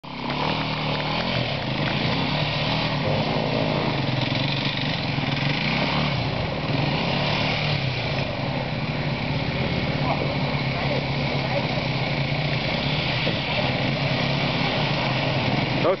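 Off-road KTM enduro motorcycle engines running on a steep, slippery rock climb, the engine note wavering up and down as the bikes are worked uphill under load.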